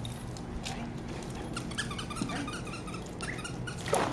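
Pembroke Welsh corgi whining eagerly in short high yips while waiting for a ball to be thrown.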